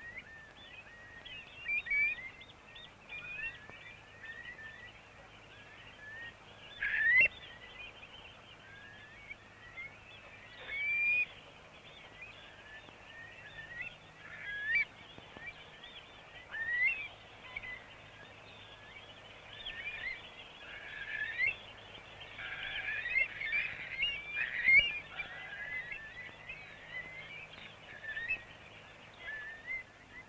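A mixed flock of shorebirds calling: many short chirping calls, some rising and some falling in pitch, overlapping more densely in the last third.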